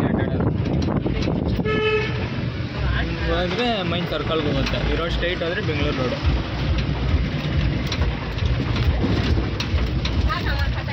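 Motor vehicle on the move, with a steady low engine and road rumble. A horn toots once, briefly, about two seconds in.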